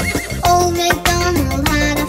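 Nursery-rhyme backing music with a cartoon horse whinny sound effect over it.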